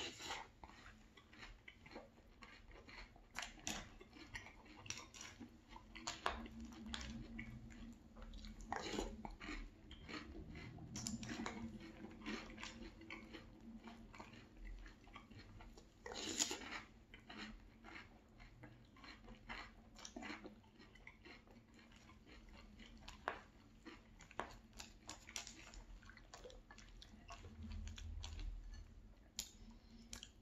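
A person chewing Very Berry Cheerios in milk: a faint, continuous run of small crisp crunches, with a few louder crunches along the way.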